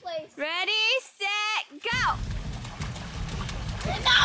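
Children shrieking and squealing in high, gliding voices for about two seconds, then an abrupt change to splashing water against a steady low rumble and hiss as they paddle pool floats with their hands.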